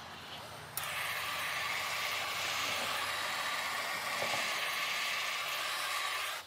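Handheld torch flame hissing steadily; it starts suddenly about a second in.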